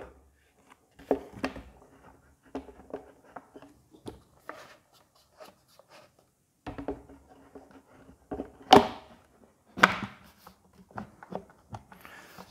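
Hard plastic parts clicking, knocking and scraping as a suction tube is fitted and turned on the housing of a Stihl SH 86C blower-vac. Two sharper knocks come about three-quarters of the way through.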